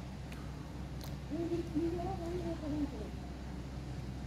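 A person's voice, wavering in pitch, from about a second in until near the end, over a steady low hum.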